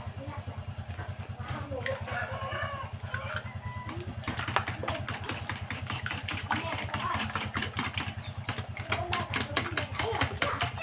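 A fork beating eggs in a stainless steel bowl, clicking rapidly against the metal from about four seconds in. Underneath is a steady low motor hum.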